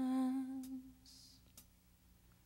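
A singer's voice holding one low note that fades away about a second in, leaving quiet.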